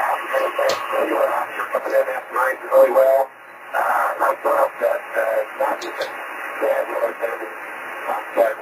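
A man's voice on a 10 GHz amateur radio signal, coming out of the receiver's speaker thin, narrow and hissy. The speech is garbled beyond understanding because the signal arrives by scattering off rain drops and clouds.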